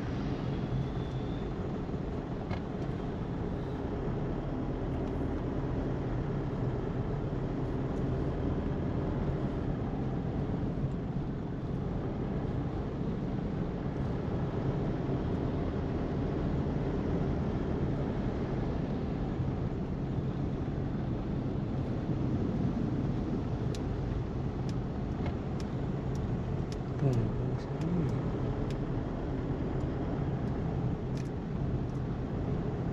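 Steady low engine and road rumble heard from inside a moving car's cabin in city traffic. About three seconds before the end, a short rising tone comes with a brief peak in loudness.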